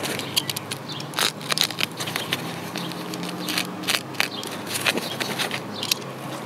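Cardboard packing being cut with a utility knife and pulled off a folded golf push cart's frame: irregular crackling and scraping with scattered sharp clicks.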